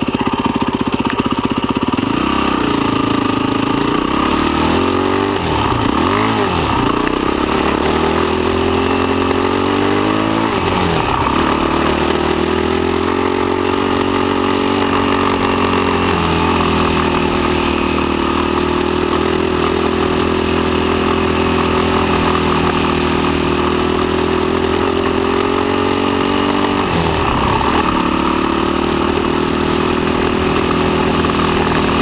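Enduro motorcycle engine heard close on board while riding a trail. The revs rise and fall with the throttle, dropping sharply four times and then climbing again.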